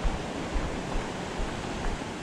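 Small sea waves washing against a rocky shoreline, a steady wash of noise.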